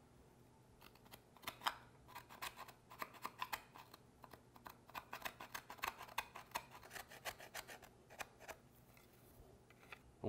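A knife blade scraping shavings off a laminate flooring sample: a quick series of short, faint scrapes that starts about a second in and stops just before the end.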